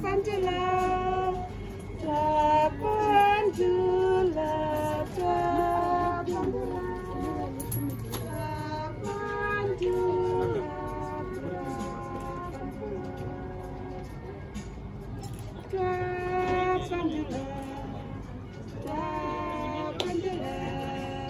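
Singing in high voices: a melody of held notes, quieter for a few seconds past the middle.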